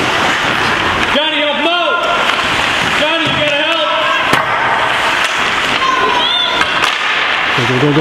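Spectators at a youth ice hockey game shouting and calling out in short bursts over a steady rink din. A few sharp knocks come from sticks and puck in the play, the clearest near the middle and near the end. A cry of "go, go, go" starts at the very end.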